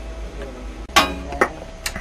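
Sharp metal clicks from tools and a small metal test weight being handled at a workbench: one clink about a second in and a lighter one near the end.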